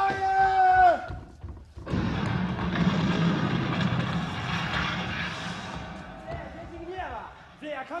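A stage battle sound effect: a held pitched note that slides down at its end, then a sudden loud rumbling blast of cannon fire or explosion that fades over several seconds, with voices coming in near the end.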